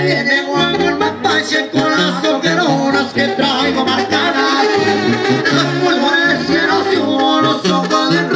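Live Mexican regional band music played through an outdoor stage PA: a melodic lead line over bass, with no break in the music.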